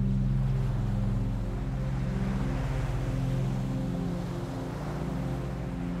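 Recorded ocean waves washing steadily over a low, sustained ambient music pad. The surf swells a little in the middle and then eases off.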